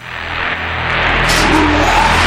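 Loud engine sound effect that swells up out of silence over about a second and then holds steady.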